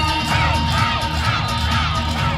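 YOSAKOI dance music playing loudly over a PA with a steady low beat. Many voices shout short rising-and-falling calls over it from about a third of a second in, the group calls typical of YOSAKOI dancers.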